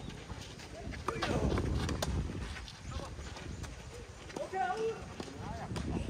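Tennis rackets striking the ball during a rally: two sharp hits about a second apart, then a fainter one, over a low wind rumble on the microphone. A short call from a voice comes about four and a half seconds in.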